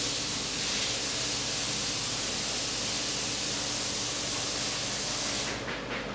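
Steady hiss of background noise with a faint low hum underneath; no distinct tool clicks or knocks stand out. The hiss thins out near the end.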